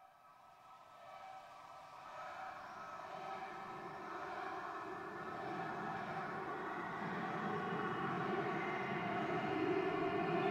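Background music fading in from silence: held, sustained tones that swell gradually louder, like the start of an ambient track.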